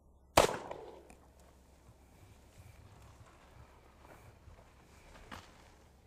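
A single shot from a .45 Colt single action revolver: one sharp, loud report about half a second in, trailing off in a short echo. A faint click follows near the end.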